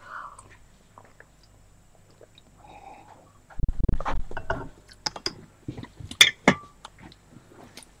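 Scattered small clicks and knocks of objects being handled, with a low bump a little under four seconds in.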